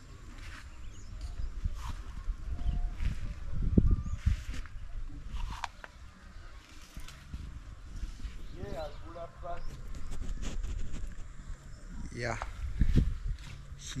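Wind rumbling on a handheld camera's microphone, with rustling and footstep noise as the camera is carried outdoors. Faint wavering voice-like calls come from farther off, once past the middle and again near the end.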